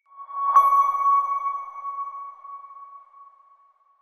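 Logo sting sound effect: a single ringing tone that swells in, strikes sharply about half a second in, and fades away over about three seconds.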